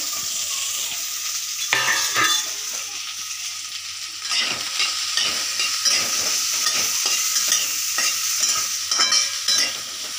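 Chopped okra sizzling in a hot aluminium wok, with a short clatter about two seconds in and, from about four seconds in, a spatula scraping and stirring through it in repeated strokes.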